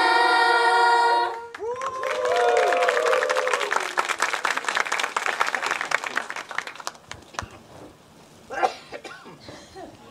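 A group of young women's voices holding a long final note, cut off after about a second, then an audience clapping and cheering, the applause dying away after about six seconds.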